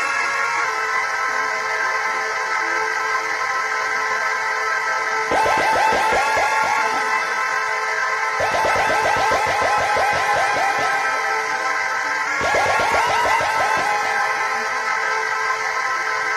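Live electronic keyboard music: a held synthesizer chord, with three bursts of fast repeated notes coming in about five, eight and twelve seconds in.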